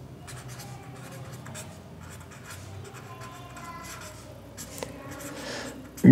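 Ballpoint pen scratching across paper in quick short strokes as words are written out by hand, with one sharper tap a little before the end.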